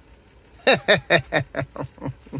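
A man laughing, a run of short falling 'ha' sounds about four or five a second, starting about two-thirds of a second in.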